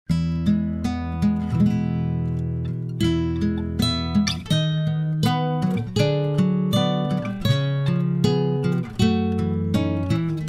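Background music: acoustic guitar picking and strumming chords, with a new note struck about every half second.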